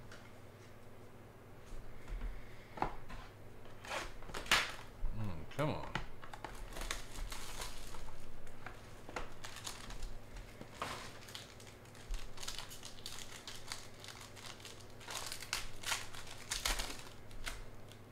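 Plastic crinkling and rustling in irregular bursts as trading cards are handled, slid into plastic sleeves and holders, and stacked.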